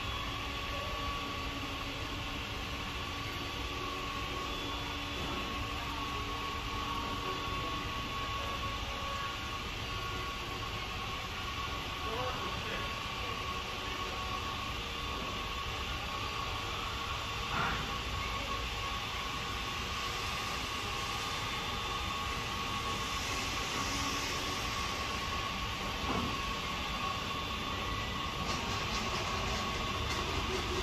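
Steady background noise of a large warehouse store: a constant hum and hiss with a thin, steady high tone, and a couple of faint knocks about midway and near the end.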